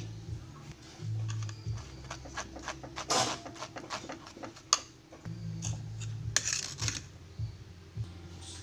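Metal spoon scraping and tapping against a stainless-steel mesh strainer as tomato paste is pressed through it: a run of short, irregular scrapes and clicks, with one sharper click around the middle. A steady low hum runs underneath.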